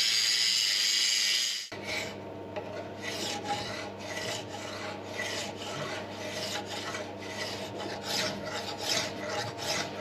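Angle grinder grinding a key seat into a steel line shaft, which cuts off suddenly under two seconds in. It is followed by a hand file rasping back and forth across the flat, about two strokes a second, flattening the key seat.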